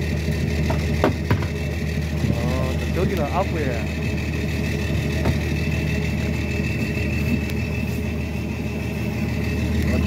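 Fishing boat's engine idling steadily, with a few sharp knocks about a second in and faint voices in the background.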